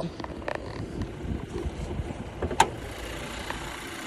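Car hood being opened: a few small clicks, then a sharp latch click about two and a half seconds in, over a low steady rumble.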